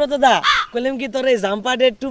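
Young men speaking Bengali in an animated, argumentative exchange.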